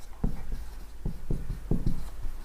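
Whiteboard marker writing on a whiteboard: a run of about seven short strokes and taps as a word is written.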